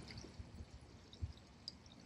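Faint light wind on the microphone, a low steady rustle, with a couple of small soft ticks.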